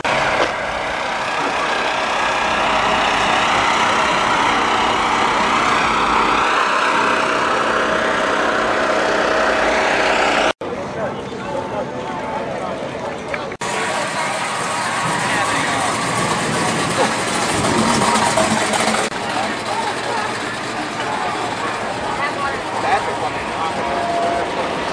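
Crowd chatter mixed with a vehicle engine running, in a steady, dense wash of sound. The sound cuts out for an instant about ten and a half seconds in and changes again about three seconds later.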